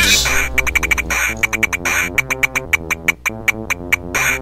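Electronic music built from loops: a dense passage drops away right at the start, leaving rapid, choppy synth stabs repeating over a low steady bass.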